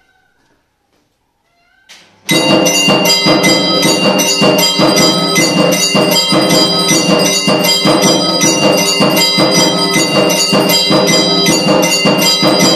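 Temple bells ringing for the aarti, dense and continuous with rapid strikes, starting abruptly and loudly about two seconds in after near quiet.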